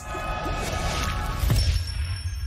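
Logo sting music with a sound effect: a swell builds, then a sharp crashing hit about one and a half seconds in, leaving high ringing tones that fade.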